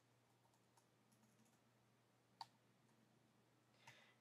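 Near silence: room tone with a few faint clicks from working at a computer keyboard and mouse, one more distinct about two and a half seconds in.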